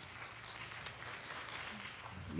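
Quiet room tone of a large hall: a faint steady hiss, with one brief sharp click about halfway through.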